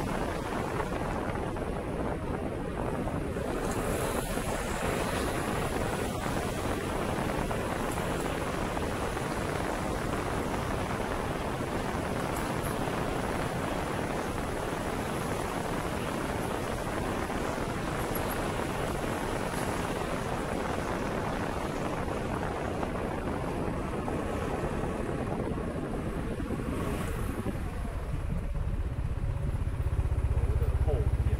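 Wind rushing over the microphone of a small handheld gimbal camera on a moving motorcycle, a steady noisy rush mixed with road noise. Near the end it eases and a low, steady motorcycle engine idle comes through as the bike stops.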